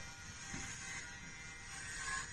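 Corded electric hair clippers buzzing steadily as they cut through a man's hair.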